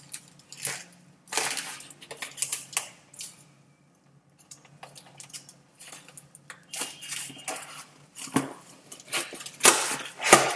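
Small cardboard box being handled and opened by hand: irregular rustling and crackling of cardboard and paper, with a quiet pause partway through and the loudest crackles near the end.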